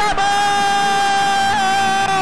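A man's shouted voice holding one long, high, drawn-out note: a football commentator's goal cry, with a slight dip in pitch near the end.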